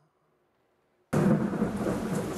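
Near silence, then about a second in a sudden loud rumble of thunder with the hiss of heavy rain, a thunderstorm sound effect opening an edited report.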